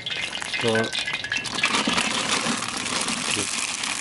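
Hot cooking oil hissing and crackling steadily in a large cast-iron kazan, heated and ready for frying.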